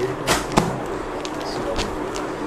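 Folded cotton sarees being handled: two sharp swishes or slaps of cloth in the first half second, then lighter rustles and taps as the fabric is set down on the counter, over a steady low hum.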